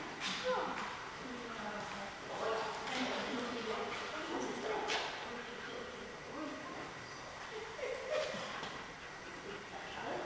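A dog giving a few short yips and barks over people's voices.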